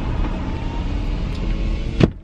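Steady low rumble of a car heard from inside the cabin, the engine and road noise of the SUV in traffic.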